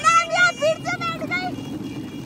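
High-pitched voices calling out excitedly for about the first second and a half, over a steady low hum.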